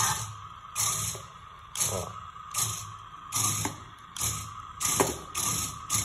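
Small electric gear motors of a 4WD stunt RC car whirring in short bursts, about eight times, as it is driven forward and back on a tabletop. A steady high tone sounds under the bursts.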